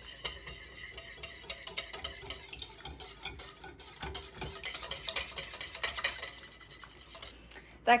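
Wire whisk beating pancake batter in a ceramic mixing bowl: a fast, steady run of scraping, clicking strokes as the wires hit the bowl, while flour is added, stopping shortly before the end.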